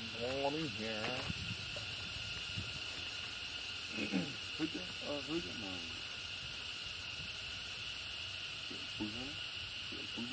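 Short, wavering vocal calls in three brief clusters, near the start, about four seconds in and near the end, over a steady high insect drone.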